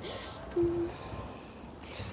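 Quiet pause with a faint low rumble on a handheld phone microphone, and one short faint steady hum about half a second in.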